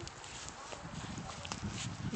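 Footsteps on a dry, patchy lawn: a few soft crunches and clicks over a low rumble on the phone's microphone, which grows about a second in.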